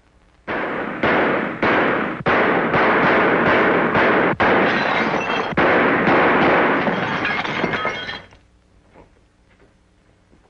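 Film sound effect of sustained automatic gunfire shattering an office window: a string of loud, rapid bursts with glass breaking, starting about half a second in and stopping after about eight seconds.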